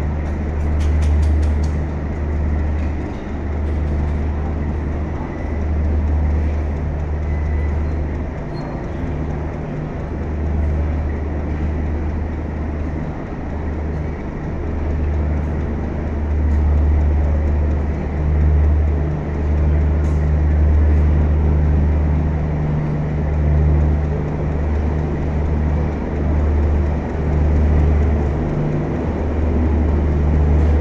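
Passenger coaches of a train rolling past at a platform: a loud, steady low rumble that swells and dips.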